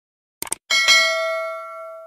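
A quick double mouse-click sound effect, then a notification bell chime rings out and slowly fades.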